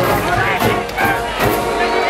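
A large marching band playing in the stands, with brass and sousaphones over drums.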